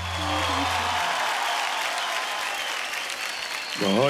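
Studio audience applauding, with the band's last held note dying away about a second in. A voice starts speaking near the end.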